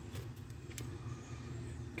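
Low, steady background hum with a couple of faint clicks, the first just after the start and another a little before one second in.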